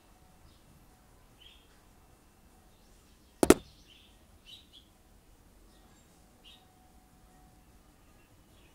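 A single sharp double knock about three and a half seconds in, by far the loudest sound, over faint scattered high chirps like small birds.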